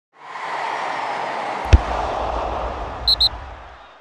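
Animated logo-intro sound effect: a swell of noise, then one sharp hit with a low boom ringing after it about one and three-quarter seconds in, and two quick high pings near the end as it all fades out.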